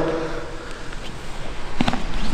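Two grapplers shifting their weight on a padded mat, with rustling of clothing and bodies against the mat, and a single short knock near the end.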